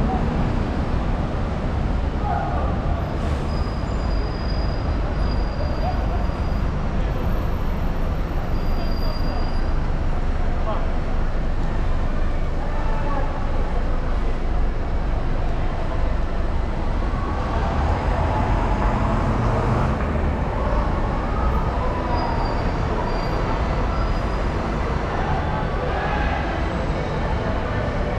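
Busy city street traffic: double-decker buses and cars passing, a steady low rumble throughout, with indistinct voices of passersby mixed in.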